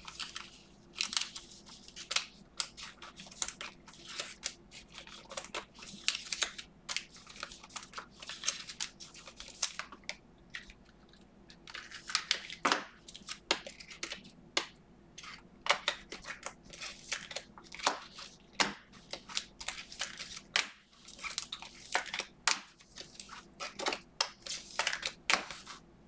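Trading cards in clear plastic sleeves and top loaders being handled and sorted: irregular crinkles, rustles and small plastic clicks throughout.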